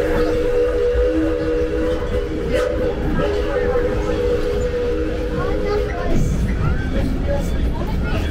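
Steam train's whistle sounding a steady three-note chord in long blasts with a few short breaks, stopping about six seconds in, over the low rumble of the moving train.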